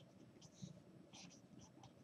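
Faint pen strokes on paper as words are handwritten: a few short, light scratches spread across the two seconds.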